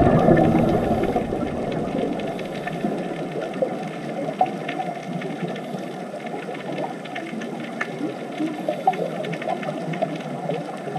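Underwater ambience picked up by a diving camera: a loud low rumble fades away over the first couple of seconds, leaving a steady watery hiss dotted with faint clicks and a few brief squeaky tones.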